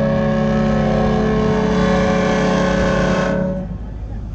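A ship's horn sounding one long, steady blast of several notes at once, cutting off about three and a half seconds in.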